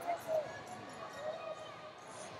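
Sports arena background of distant voices, with two short dull thuds a quarter of a second apart near the start.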